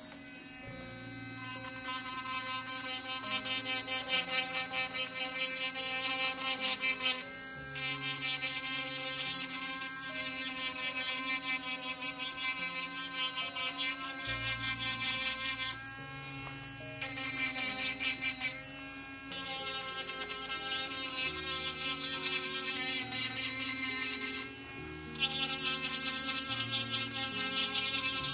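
Handheld electric nail drill (e-file) running steadily while its bit files a nail, over background music.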